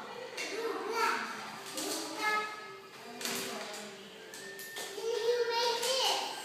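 Indistinct voices in a room, including high-pitched children's voices talking, loudest near the end.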